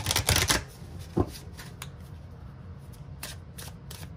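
A deck of cards being shuffled by hand, with a quick burst of riffling right at the start, a single knock about a second in, then softer scattered card slides and taps.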